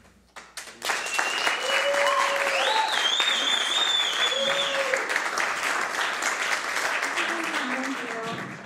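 An audience applauding after the last notes of a song fade out. The clapping starts about a second in, with cheering voices and a high, wavering whistle in the first few seconds.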